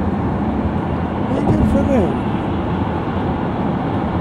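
Steady road and engine noise heard inside a moving car, with a person's voice briefly about one and a half seconds in.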